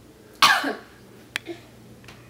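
A baby makes one short, sudden vocal burst that falls in pitch, like a cough. A faint click follows about a second later.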